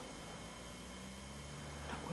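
Quiet night-time background: a steady hiss with a faint low hum that comes in about half a second in and holds steady.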